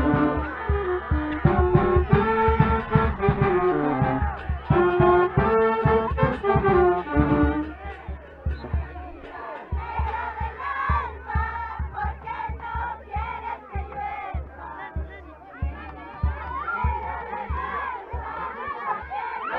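Brass band music, a melody in clear stepped notes over a steady drum beat. About halfway through the brass stops, and a crowd of voices chants and shouts over the drum beat, which keeps going.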